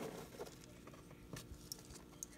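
Faint clicks and light rubbing as a plastic net pot packed with clay pebbles is lifted out of its hole in the hydroponic lid.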